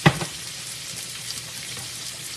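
Small meatloaf patties sizzling in grease in a skillet, a steady frying hiss. A single sharp knock right at the start.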